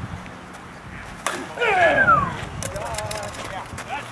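A softball bat strikes the ball with a sharp crack about a second in, followed by loud shouting from the field.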